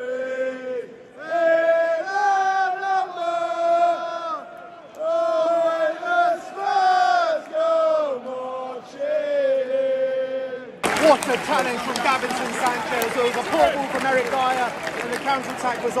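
A football crowd in the stands singing a chant together in long, drawn-out sung notes. About eleven seconds in, the audio cuts suddenly to a louder, noisier hubbub of many voices from the crowd.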